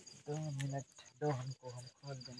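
Crickets chirping in a rapid, even pulse behind quiet talking voices.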